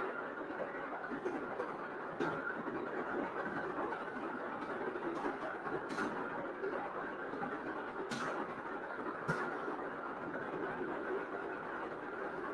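Steady background noise, with a few faint clicks scattered through it.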